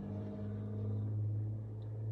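A steady low hum on one held pitch, even in level throughout.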